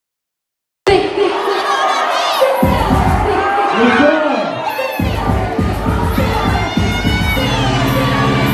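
Silence for almost a second, then loud music with a heavy bass line, under several voices shouting and cheering.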